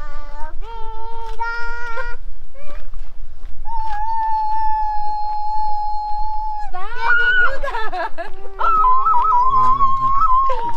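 A child's voice singing and calling out in high, sung phrases, with one long note held steady for about three seconds from about four seconds in. Lively, wavering vocalising follows, with a second voice joining near the end.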